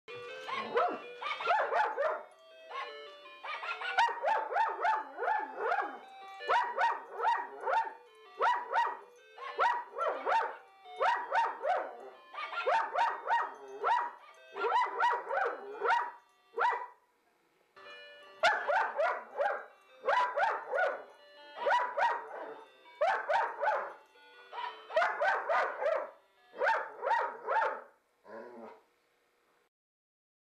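A battery-powered singing toy dog plays a Christmas song as short, rapid, pitched bark-like notes in repeated phrases, while a German Shepherd sings along. The song pauses briefly midway and stops shortly before the end.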